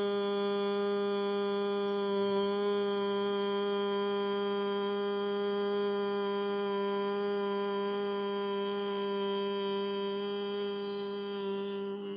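A single voice holding a long, steady hum at one constant pitch, like the closed-mouth humming of yogic chanting or bhramari breathing, without a break. It stops abruptly just after the end.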